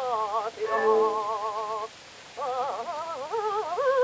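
Operatic mezzo-soprano voice on a 1906 acoustic disc recording, singing with a wide vibrato: held notes, a brief break about two seconds in, then quick ornamented runs. A steady hiss of record surface noise lies under the voice.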